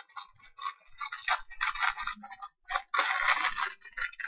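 Thin clear plastic bag crinkling and rustling as it is handled and opened, in irregular crackly bursts that grow denser about three seconds in.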